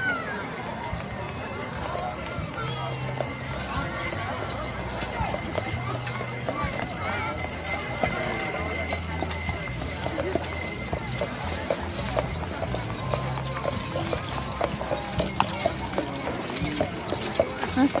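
A horse's hooves clip-clopping at a walk as it pulls a carriage, a run of short, evenly spaced clops, over background music.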